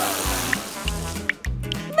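Water rinsing a lollipop: a steady hiss that fades out a little past a second in, over background music with a steady low beat.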